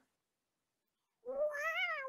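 Silence, then about a second in a single high, drawn-out meow-like call that rises and then falls in pitch, lasting about a second.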